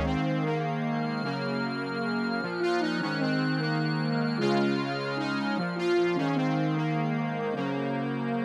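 Melodic space-rap type beat playing without drums or bass: a synth-keyboard chord progression, the chords changing every second or so, over a thin high held tone.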